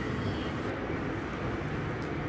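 Steady low hum and hiss of a metro station's background noise, with no distinct events.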